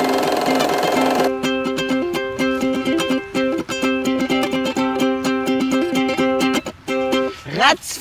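Ukulele plucked and strummed in a repeating pattern of notes. The pattern follows a held, chord-like tone in the first second and fades out shortly before the end.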